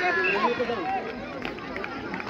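Several voices shouting and calling over one another, players and spectators urging on play, with crowd chatter behind; no clear words stand out.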